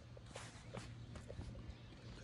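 Faint, irregular footsteps on a concrete driveway, over a steady low hum.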